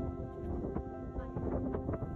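Soft background music of sustained, steady tones, with irregular light clicks and knocks over it from about half a second in.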